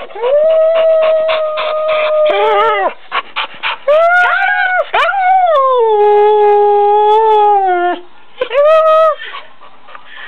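Pit bull–type dog howling back in reply to "I love you", in imitation of the words. It gives four calls: a long level one, a shorter one that rises and falls, a long one that slides down in pitch, and a short one near the end.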